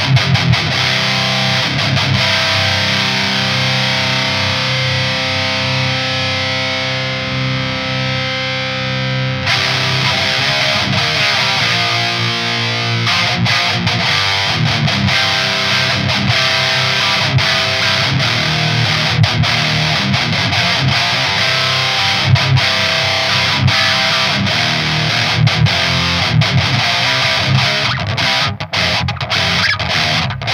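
Jackson DK2 electric guitar played through a Klirrton Oh My Goat distortion pedal into the Driftwood Mini Nightmare amp: heavily distorted metal riffing. A held chord rings out for a few seconds, then fast, tight riffs follow, cut by a few abrupt stops near the end.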